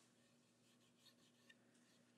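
Near silence: faint room tone with a steady low hum and two tiny soft ticks about a second in and a half-second later.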